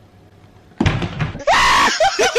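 A person screaming loudly for about half a second near the end, after a rough burst of noise about a second in.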